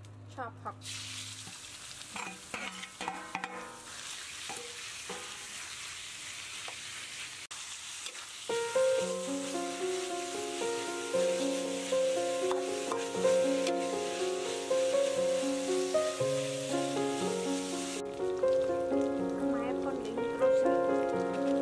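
Minced meat dropped into hot oil in a wok starts sizzling about a second in, and keeps sizzling while it is stirred with a spatula, with a few knocks in the first seconds. Light plucked music comes in about halfway, and the sizzle cuts off sharply near the end.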